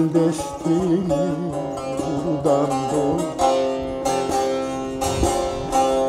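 Bağlama (Turkish long-necked saz) played with quick plucked strokes in a folk melody. Over the first half a man's wordless voice holds a wavering line, then it stops and the saz carries on alone.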